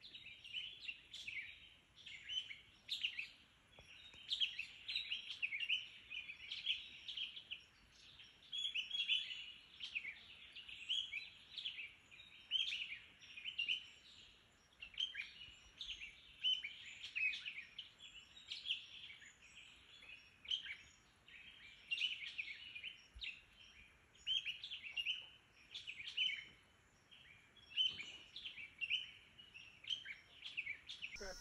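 Songbirds chirping and twittering without a break: many short, quick calls that rise and fall in pitch, coming in clusters every second or so.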